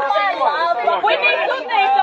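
Several people talking over one another at once: lively group chatter of mostly women's voices.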